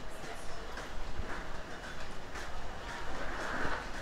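Regular footsteps at walking pace on a jet bridge floor, over a steady low hum.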